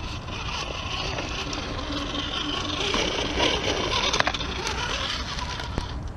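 Axial SCX10 RC rock crawler's electric motor and gears whining as it climbs over rocks, getting louder in the middle, with a few sharp clicks of tyres and chassis on stone near the end.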